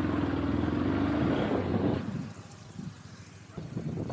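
Motorcycle engine running under throttle while riding, then dropping away sharply about halfway through as the throttle is closed, leaving a much quieter engine and a few faint knocks.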